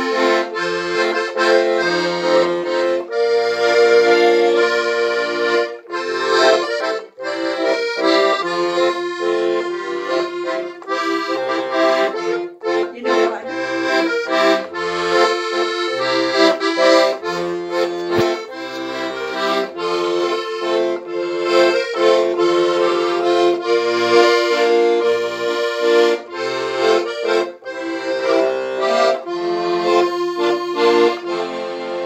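Piano accordion playing a tune: a sustained melody and chords over short, separate bass notes.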